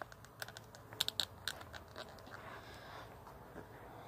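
Light, sharp clicks and taps of small hard-plastic action-figure accessory pieces being handled, a quick cluster in the first couple of seconds and then a few fainter ones.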